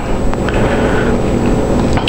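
Steady mechanical hum with a hiss and a faint high whine, as from a running fan or motor.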